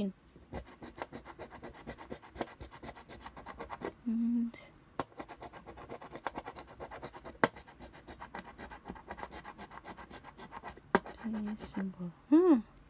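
A coin-shaped scratcher scraping the coating off a paper scratch-off lottery ticket in quick, repeated short strokes, with a few sharper clicks as it catches the card.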